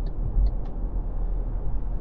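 Steady low road rumble with fainter tyre and wind noise inside the cabin of an MG4 electric car cruising at speed, with no engine sound.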